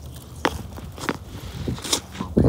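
A handful of sharp clicks and light rattles from a clear plastic tackle box of loose gold Aberdeen hooks being handled and tilted.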